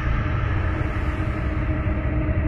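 Cheer routine music in a sustained low rumbling passage, with a steady held tone over it and no clear beat.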